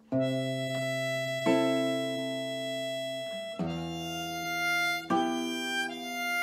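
Harmonica in a neck rack coming in with long held melody notes over the plucked chords of a nylon-string classical guitar, a new note and chord about every one and a half to two seconds.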